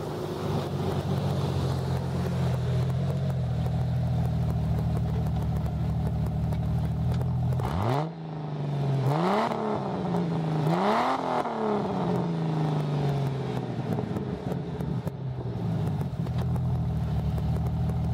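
Jeep Cherokee XJ engine breathing through an APN header, high-flow cat and MagnaFlow Magnapack muffler. It runs steadily at first, then about eight seconds in it is revved in three quick blips, each rising and falling in pitch, and settles back to a steady idle.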